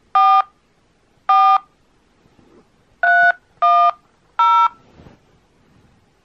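Touch-tone (DTMF) keypad beeps from a mobile phone on speakerphone: five short beeps, the first two about a second apart and the last three in quicker succession, keying in a five-digit postcode at an automated phone menu's prompt.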